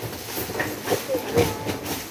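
Irregular clattering and knocking, with voices in the background.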